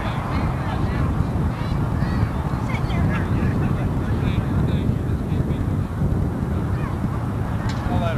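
A steady low rumble, like wind on the microphone, under scattered indistinct voices and short calls from people nearby. There is one sharp click near the end.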